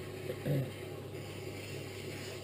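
Electric potter's wheel running with a steady low hum, with a brief louder sound about half a second in.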